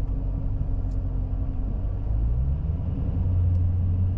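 Dodge Challenger's engine and road rumble heard from inside the cabin while driving. The engine note rises about halfway through and then holds steady.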